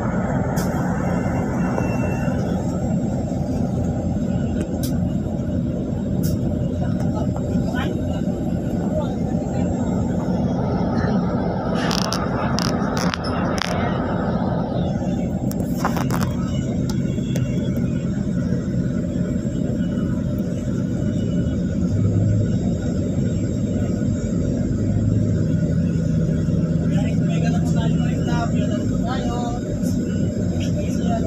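Diesel bus engines idling, a steady low rumble, with people talking over it and a few sharp clicks about halfway through.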